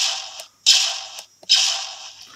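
Three E-11 blaster shot sound effects played from a DFPlayer Mini through a PAM8403 amplifier and small speakers, about one every three-quarters of a second. Each is a sudden burst that fades within half a second, thin with no bass. Each press of the fire button fires one single shot and takes one round off the ammo count.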